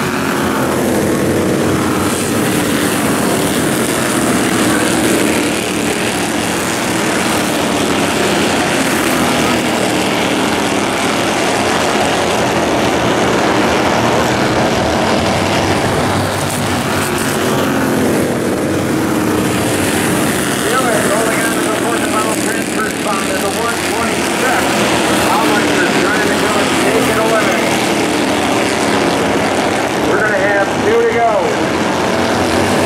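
Engines of a pack of small Bandolero race cars racing on an oval track, their pitch rising and falling in long sweeps as the cars accelerate, pass and lift through the turns.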